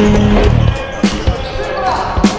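Background music with a steady beat that cuts out about two-thirds of a second in, leaving the sharp bounces of a basketball being dribbled on a sports-hall floor.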